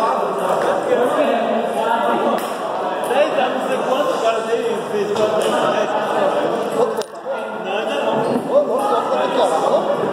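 Indistinct, overlapping voices echoing in a large hall, steady throughout, with one sharp click about seven seconds in.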